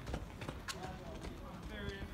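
A sprinter's rapid footfalls striking a rubberized running track, with faint voices behind.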